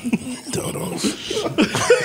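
A cough amid people's laughter, with short voice sounds throughout.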